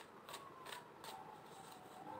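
A deck of tarot cards being shuffled by hand: soft card-on-card slides with three short clicks in the first second.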